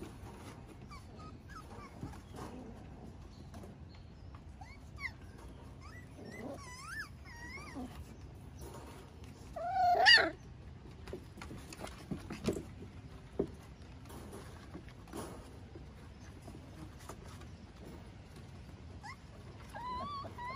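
Miniature Schnauzer puppies, five weeks old, giving short, high whimpers that rise and fall, with one louder cry about ten seconds in and a few scattered clicks.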